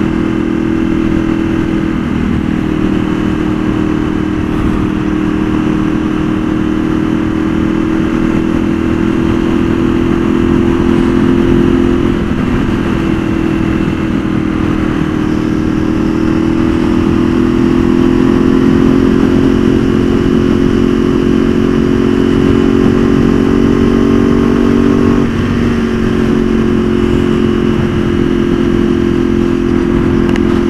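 Ducati 848 EVO's L-twin engine running steadily at cruising speed, heard from the rider's seat, with a rough rushing noise underneath. Its pitch dips briefly twice, about twelve and twenty-five seconds in.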